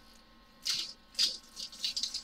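A small, tightly sealed paper-wrapped packet of diamond-painting drills being handled and pulled at to open it: the wrapping rustles in three short bursts.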